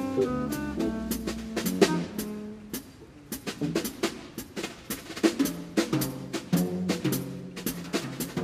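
Live jazz combo playing, with the Gretsch drum kit and Paiste cymbals to the fore: snare hits, rimshots and bass drum over a walking bass line. The drums dip briefly about three seconds in.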